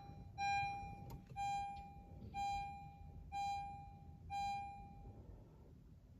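A car's electronic chime beeping steadily, about once a second, five times, each tone held almost a second before it stops about five seconds in. It sounds as the new smart key is being registered to the 2022 Honda HR-V.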